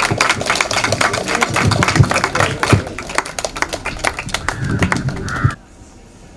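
Small crowd clapping: a dense, irregular patter of hand claps that cuts off about five and a half seconds in.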